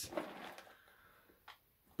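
Cardboard box being handled and turned over: a short rustle and scrape at the start that fades quickly, then quiet, with one light tap about one and a half seconds in.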